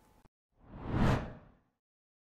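Transition whoosh sound effect. It swells over about half a second and fades away by about a second and a half in, then cuts to silence.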